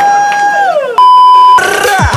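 A held high pitched tone that slides down in pitch, then about a second in a loud steady single-pitch bleep of the kind used to censor, lasting about half a second, followed by another falling tone.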